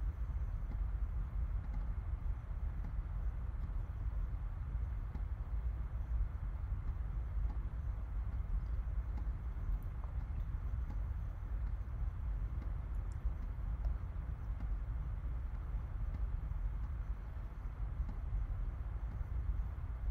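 Steady low background rumble of room noise, with a few faint clicks.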